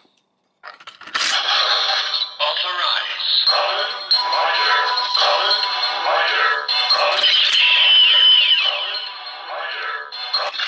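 DX AIMS Shotriser toy's electronics through its small speaker: a sharp click about a second in as the Progrise Key goes in, then the looping standby jingle, electronic music with a synthesized voice calling "Kamen Rider!".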